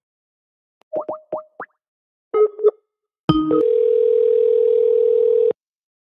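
A phone call being placed: a few short electronic blips, then a click and a steady ringing tone for about two seconds, the line ringing at the other end.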